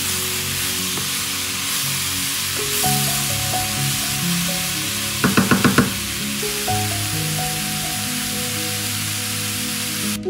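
Food sizzling in hot oil in a frying pan, a steady hiss, with a quick run of about six short pulses a little past the middle.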